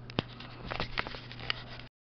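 Scattered clicks and light taps from handling a stainless steel bowl of raw ground-meat mixture, one sharper click just after the start, over a low steady hum. The sound drops out completely near the end.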